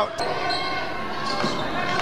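Indoor basketball game sound echoing in a large hall: the ball and players' shoes on the court, with background voices, steady and moderate.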